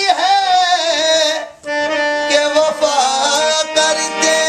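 Qawwali singing: a man's lead voice sings a wavering, ornamented melody over the sustained reed chords of a hand-pumped harmonium. The music drops out briefly about one and a half seconds in, then the harmonium resumes.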